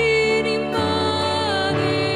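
A woman singing a Romanian hymn while accompanying herself on a strummed acoustic guitar; she holds one long note and the chord changes about three-quarters of a second in.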